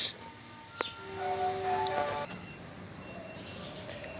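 A click, then a distant horn-like blare held for a little over a second, several steady pitches sounding together, followed by faint background sound.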